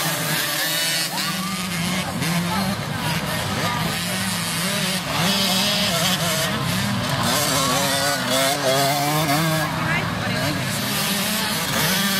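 Several small youth dirt bike engines running and revving, their pitch rising and falling as the riders go through the course, mixed with spectators' voices.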